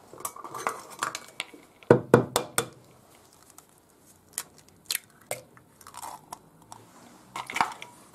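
Eggs being cracked into a small glass bowl: a few clusters of sharp shell taps and crunches, with light clinks of the glass.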